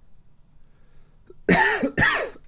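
A man coughing: two loud, harsh coughs about one and a half seconds in, after a quiet stretch of room tone.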